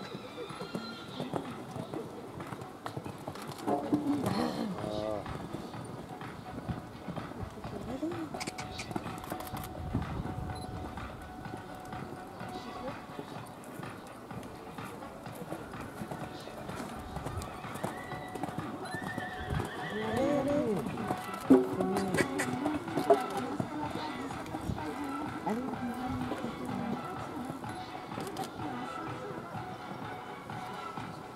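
Hoofbeats of a show-jumping horse cantering and jumping a course on a sand arena.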